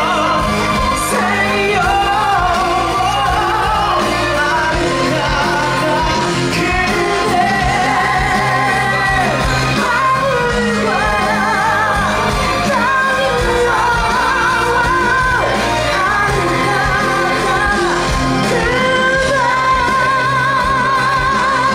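Live musical-theatre number: a male singer belts into a microphone over loud amplified band music, the held notes wavering with vibrato.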